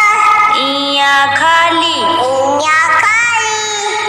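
A child's voice singing a Hindi alphabet song in long held notes over backing music.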